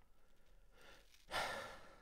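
A single audible breath from the man, starting about two-thirds of the way in and fading away, over otherwise quiet room tone.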